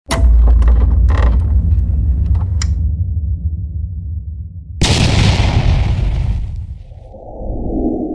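Edited intro sound effects: a deep boom with crackling hits that rumbles away over a few seconds, then a second sudden boom with a rushing whoosh at about five seconds, and a softer swell that fades out at the end.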